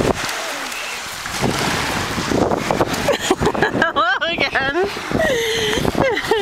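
Wind and surf noise on the microphone, then from about two seconds in a toddler's high-pitched babbling and squeals in short bursts.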